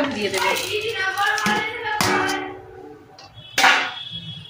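Vegetables tipped from a bowl into a pot of boiling khichuri, landing with two short noisy splashes, about halfway and near the end, the second the louder.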